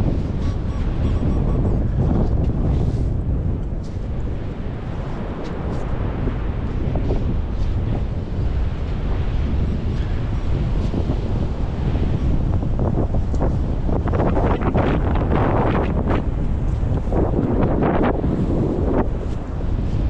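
Strong wind buffeting the microphone as a loud, steady rumble, with surf washing in. In the last few seconds, a run of short scrapes and splashes as a metal sand scoop digs into wet beach sand.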